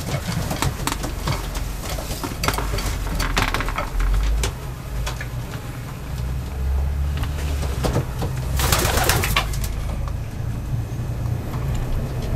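Racing pigeons cooing in a wooden loft, with scattered scuffles and light knocks from birds moving about the nest boxes. A louder rustling flurry, about a second long, comes about three-quarters of the way through.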